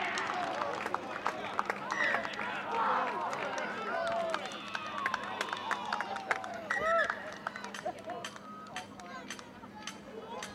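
Several voices shouting and calling out over one another from spectators and players, loudest early on and again about seven seconds in. A run of sharp clicks follows near the end.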